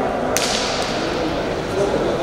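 A single sharp smack, about a third of a second in, against the hum of voices in a large hall.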